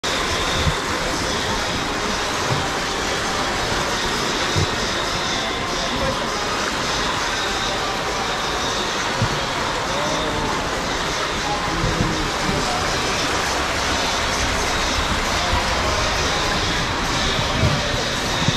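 Steady rush of water running down into the slide's enclosed tube, with a few soft thumps.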